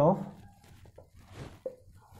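Marker pen writing on a whiteboard: a few faint, short scratches and squeaks as the strokes are drawn.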